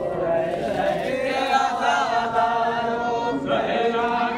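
A group of men chanting a noha, a Shia mourning lament, together in one melody with several voices overlapping.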